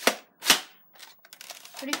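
Two sharp plastic clacks about half a second apart, the second with a low thump, from a Nerf Demolisher blaster being handled.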